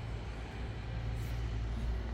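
A steady low rumble of outdoor background noise, with no distinct events.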